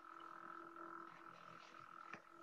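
Near silence: a faint, steady electrical hum and hiss from an open microphone line on a video call.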